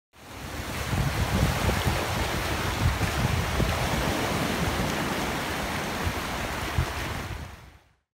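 Rushing water and surf: the roar of a river running into breaking sea waves, a steady rush with an uneven low rumble beneath. It fades in over the first second and fades out just before the end.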